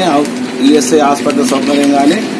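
A man speaking Telugu into a handheld microphone in a continuous flow of talk.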